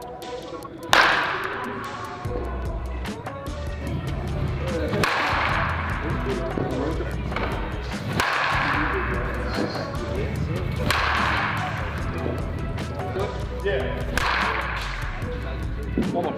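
Baseball bat hitting pitched balls: five sharp cracks about three seconds apart, each ringing on in a large indoor batting hall, the first the loudest. Background music with a steady low beat runs underneath.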